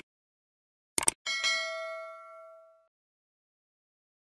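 Subscribe-button sound effect: a sharp mouse click right at the start, another double click about a second in, then a bright notification-bell ding that rings out and fades over about a second and a half.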